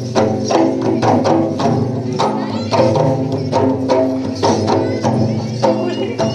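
Mundari folk music played live: two hand drums beaten in a steady rhythm, about two to three strokes a second, under group singing.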